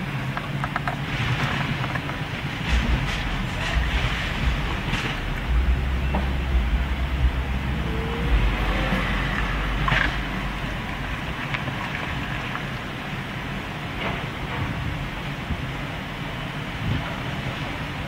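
Excavator demolishing an old wooden house: a steady engine drone with occasional sharp knocks and cracks of timber as the grapple tears at the frame. Low wind rumble on the microphone, heaviest in the middle.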